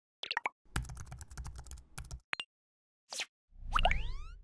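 Animated logo sound effects: a few short pitched blips, then a quick run of clicks over a low rumble. A brief swish follows, then a loud low hit with rising, chime-like sweeps near the end.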